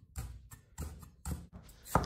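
Chinese cleaver chopping preserved mustard greens (yacai) on a round wooden chopping block: four dull chops, roughly half a second apart.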